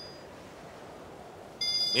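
Mobile phone ringtone: a chord of thin, high, steady tones that stops just after the start and rings again about a second and a half in, an incoming call.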